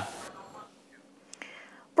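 The end of a spoken word, then a short, nearly quiet gap between speakers, with a small click and a brief breath just before the next voice starts.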